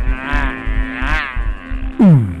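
Eerie live stage music: a wavering keyboard tone that bends up and down in pitch over a pulsing bass beat. It ends in a steep falling pitch glide.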